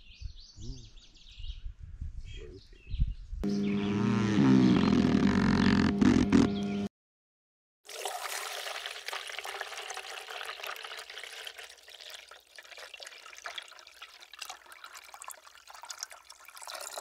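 Coffee poured from a GSI French press into an insulated mug: a steady splashing trickle from about eight seconds in. Before that, knocks and handling as the plunger is pushed down, then a loud steady pitched tone lasting about three seconds, which cuts off abruptly.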